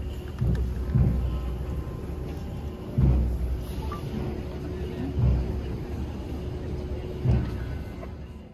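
Outdoor crowd noise with wind buffeting the phone microphone in about five irregular low rumbles.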